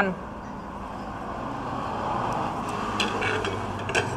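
Road traffic passing by, a steady rush that swells toward the middle and eases off, with a few light clicks of crockery being moved on a table near the end.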